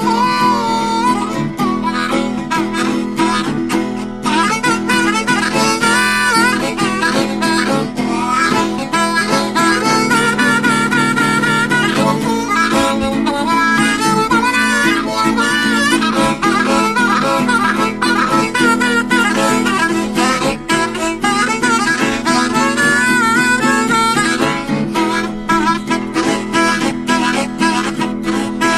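Harmonica solo with a wavering melody, played over a strummed acoustic guitar in a country instrumental break.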